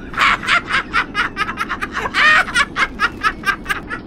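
A person laughing in quick, even bursts, about five a second, with one longer, louder burst about two seconds in, over a steady low hum.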